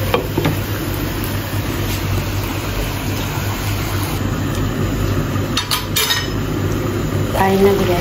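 Mutton and bottle gourd curry simmering in a covered wok on a gas burner: a steady sizzling hiss over a low hum, with a couple of sharp clicks about six seconds in.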